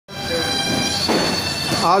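Steady machine hum and whine of a working commercial kitchen range, with several constant high tones, and a man's voice starting just before the end.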